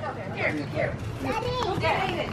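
Children's voices shouting and calling out over one another as they play.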